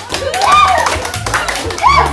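A group clapping their hands in quick, uneven claps, with high-pitched voices calling out over background music.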